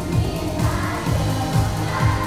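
Children's choir singing over instrumental accompaniment with a steady beat.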